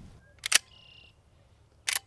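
Lever action of a brass-receiver Henry Axe .410 short-barrel shotgun being worked: two sharp metallic clacks about half a second in, a short ringing tone, then another clack near the end. The shell sticks in the action, a sign that the gun doesn't like these shells.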